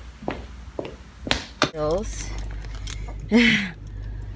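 A few light clicks and knocks, then from just under two seconds in a steady low rumble of a car engine idling, heard from inside the cabin, with two short snatches of voice over it.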